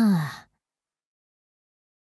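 The last note of a pop song: after the band cuts out, one held note slides down in pitch and fades away within about half a second, then the track ends in silence.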